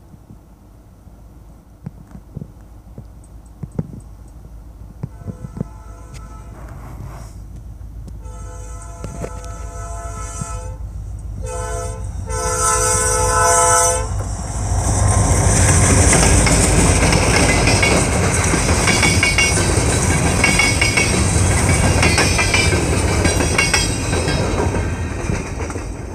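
Diesel freight locomotive approaching a grade crossing, its rumble growing, then sounding its horn in several blasts about halfway through, a long one, a short one and a final long one. It then passes close by with a loud engine rumble, and the wheels of the covered hopper cars clatter over the rails.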